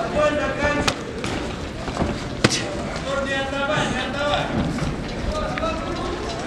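People shouting in a sports hall during a kickboxing exchange, with sharp smacks of gloved blows landing, the loudest about two and a half seconds in.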